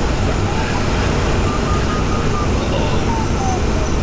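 Steady rush of airflow through the cockpit of a Jantar Std. 2 fiberglass glider in flight. The variometer beeps in short pips, starting about a second and a half in. The pips step down in pitch near the end, which signals a falling climb rate.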